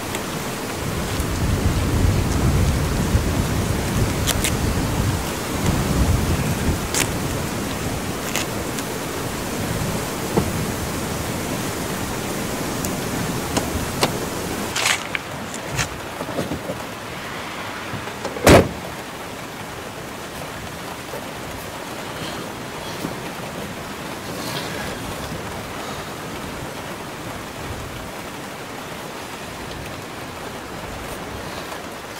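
Rain with a swelling low rumble of wind in the open air. Partway through it changes to steady, quieter rain on a car's roof and windscreen heard from inside the cabin, with a few sharp clicks and one loud thump past the middle.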